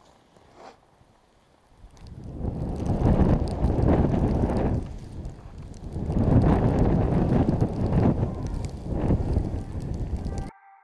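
Wind buffeting the microphone of a skier's point-of-view camera in deep fresh snow, coming in two long gusts of a few seconds each, the first starting about two seconds in.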